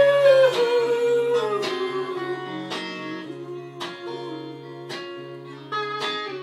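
Solo guitar played live: chords struck about once a second under a long held note that slides down in pitch over the first two seconds and then settles.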